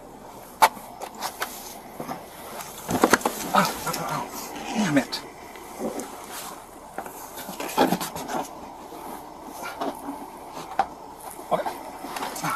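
Close-up scuffling and handling noise of a body-worn camera, with irregular clicks and knocks and brief muffled voice sounds, as a handcuffed man is moved into the back seat of a patrol car.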